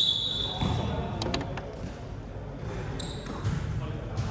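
Basketball game sounds on an indoor court: a ball bouncing, with a couple of sharp knocks just after a second in, and brief high sneaker squeaks at the start and about three seconds in. Players' voices are heard in the background.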